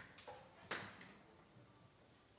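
Near silence in a hushed concert hall as a string orchestra waits to begin, broken by a few small clicks and one sharper knock just under a second in.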